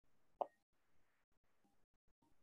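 Near silence, broken once by a single brief click about half a second in.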